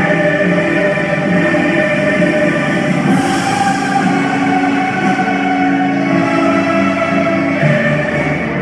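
Choral music with long held notes, the harmony shifting about three seconds in and again near the end.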